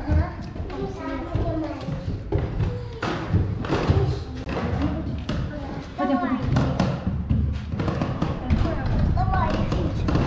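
Footsteps knocking on the steps of a narrow stairwell as several people climb, with voices talking over them.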